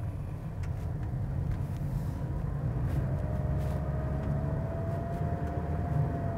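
Steady low tyre and road rumble heard inside the cabin of a small eco car rolling on Michelin Energy XM2+ tyres at about 45 km/h; the cabin is quiet. A faint, slightly rising whine joins about halfway.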